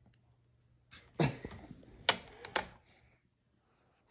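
Hard plastic shape blocks knocking and clacking against a plastic shape-sorter toy on a wooden table: a thump about a second in, then two sharp clacks about half a second apart.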